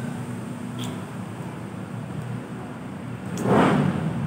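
Steady low hum of street traffic, with small faint crinkles of a plastic wrapper being peeled off a lip tint. A brief louder rush of noise swells and fades near the end.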